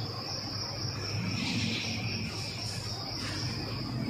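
A steady, high-pitched insect trill, like a cricket's, running unbroken over a low background hum.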